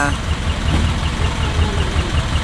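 Cab-over truck's diesel engine idling with a steady low throb, a faint quick ticking running over it.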